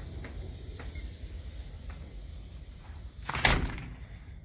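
A door being moved: one short, loud rush of noise lasting about half a second near the end, after a few faint ticks.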